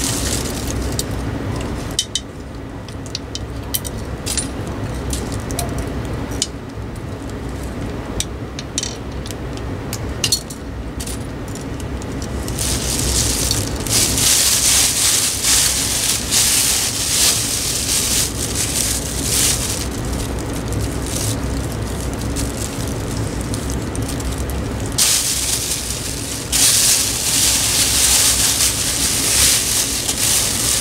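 Clear plastic bag crinkling and rustling as a ceiling fan motor is handled and wrapped in it, loudest and most continuous from a little before halfway through, with a short break near the end. In the first part there are light clicks and clinks of the parts being handled.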